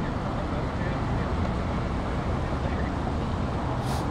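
Steady outdoor background noise picked up by the press microphones: a low rumble under an even hiss, with one brief sharp click near the end.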